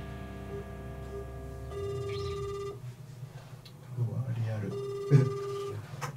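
Ringback tone of an outgoing phone call heard through a smartphone's speakerphone: two one-second beeps about three seconds apart, the line ringing and not yet answered.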